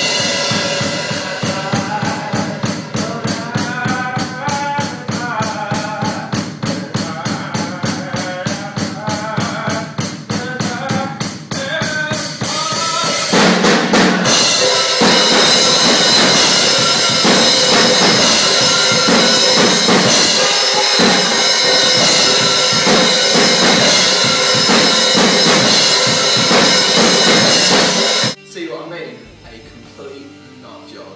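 Acoustic drum kit played hard: a steady, fast beat of about four hits a second, then from about thirteen seconds in a dense, crashing stretch full of cymbals that cuts off suddenly near the end.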